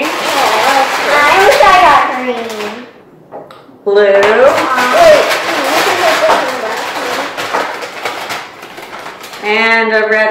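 Voices talking and exclaiming, with plastic markers rattling and clicking inside a paper bag as a hand stirs them. There is a short lull about three seconds in.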